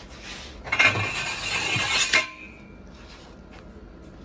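Aluminium truss tubing being handled, clinking and scraping against metal for about a second and a half and ending in a sharp knock.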